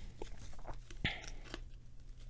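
A stack of glossy Donruss Optic football trading cards shuffled and slid through the hands, making soft rustles and a few light clicks, the sharpest about a second in, over a low steady hum.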